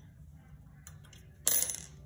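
Iron baluster shoe sliding down the baluster and landing on the stair tread with a sharp, briefly ringing clink about one and a half seconds in, after a couple of faint ticks.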